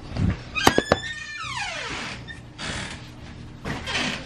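Door latch clicking twice, followed by the door's hinge creaking in a squeal that falls sharply in pitch.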